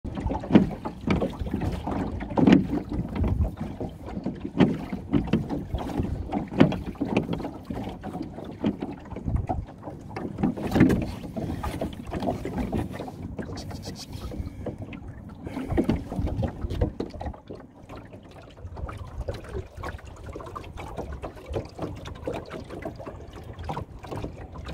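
A pair of wooden oars rowing a small Shellback dinghy. The strokes come about every two seconds, each with a swell of water noise.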